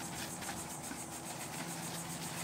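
Steady low mechanical hum in the background, even in level throughout.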